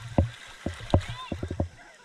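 Handling noise on a waterproof action camera: a quick series of dull knocks and taps, about seven in under two seconds, with a short vocal sound in the middle.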